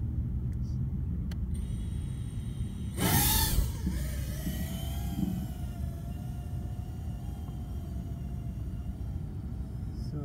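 Eachine Seagull FPV drone's motors spooling up with a short loud rush about three seconds in, then a steady, slightly wavering whine as it flies, over a constant low rumble.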